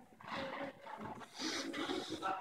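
A woman's forceful, strained exhalations with the effort of pull-up reps: two breathy bursts about a second apart, the second one partly voiced like a grunt.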